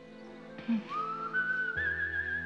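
Background music: a single high, whistle-like lead tone glides upward about a second in and then holds steady with a slight wobble, joined near the end by a low sustained bass note.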